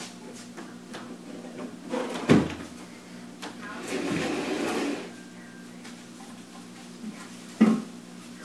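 Tall wooden bookshelf being manoeuvred through a doorway: two sharp wooden knocks, one about two seconds in and one near the end, with about a second of rubbing and scraping between them as it is shifted.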